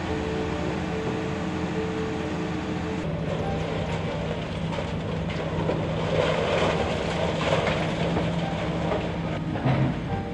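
Demolition excavators working a concrete building: diesel engines running steadily with the crunch and clatter of breaking concrete and rubble. The crunching grows rougher and louder about three seconds in, heaviest a few seconds later.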